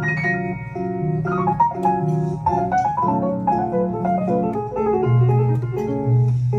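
Grand piano playing a jazz solo: quick runs of single notes rising and falling over chords and low bass notes.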